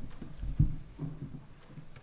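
A few dull, low thumps, the loudest just past half a second in, with faint low murmuring under them.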